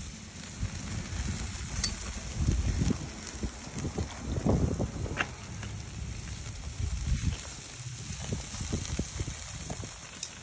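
Steaks sizzling on the wire grate of a red oak chunk-wood grill, with a couple of faint crackles from the fire and a low, uneven rumble of wind on the microphone.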